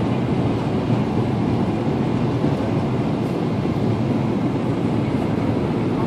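Steady engine and airflow noise inside a jet airliner's cabin on its final descent to landing.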